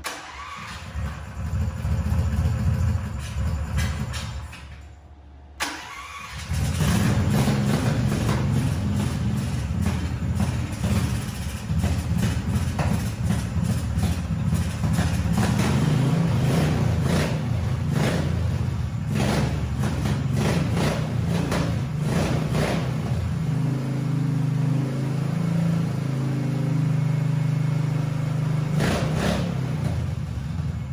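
A 440cc single-cylinder petrol engine being cranked for about four seconds, then catching about six seconds in on its first try with the carburettor fitted. Its revs rise and fall several times, then it settles into a steady idle for the last few seconds.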